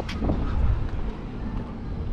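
Outdoor street background noise: a steady low rumble with no single clear source.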